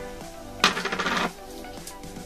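A plastic container being grabbed and handled, giving one short scraping rattle about half a second long, over background music.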